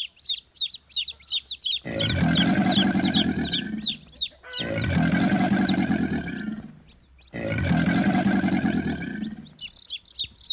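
Chicks peeping in quick, falling chirps, then three loud, raspy monitor lizard hisses of about two seconds each, with short gaps between them and the chick peeps carrying on underneath. It is a lure recording meant to draw monitor lizards.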